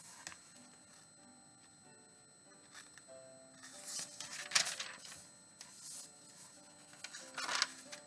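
Faint paper rustling as Bible pages are turned, twice: once between about three and a half and five seconds in, and briefly again near the end. Soft background music plays quietly underneath.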